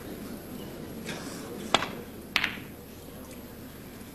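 Snooker balls clicking: two sharp clicks a little over half a second apart, typical of the cue tip striking the cue ball and the cue ball then hitting another ball. A hushed arena crowd murmurs underneath.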